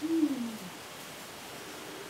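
A person's short, low hum ('mm') falling in pitch for under a second, then quiet room tone.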